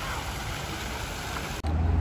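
Water from the Ross Fountain's jets splashing steadily into its basin. It cuts off about one and a half seconds in, giving way to a low rumble.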